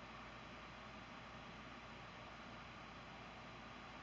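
Near silence: room tone with a steady, faint hiss.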